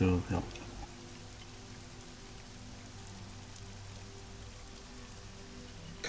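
Quiet ambient background music of soft, held tones over a faint even hiss.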